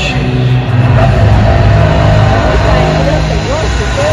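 Loud, echoing stadium sound inside a domed arena: bass-heavy music over the public-address system with crowd noise underneath. Near the end a voice slides up and down in pitch.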